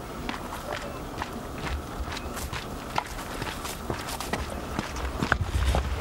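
Footsteps crunching on a dirt mountain trail, about three steps a second, with a low rumble near the end.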